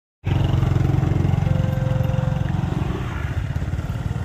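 Motor scooter engine running close by at low speed, slowly getting quieter as the scooter moves off.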